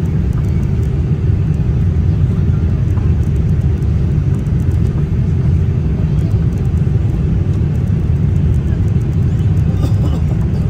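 Loud, steady low rumble inside an airliner's cabin over the wing as the jet lands and rolls along the runway: engine and airflow noise with the wheels on the runway.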